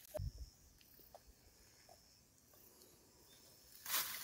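Near silence: faint outdoor ambience, with one brief low thump just after the start.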